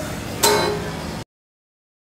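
A guitar chord strummed once about half a second in and left ringing, cut off abruptly about a second later, followed by dead silence.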